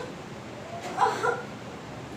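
A woman's short, high-pitched cry, a single yelp about a second in.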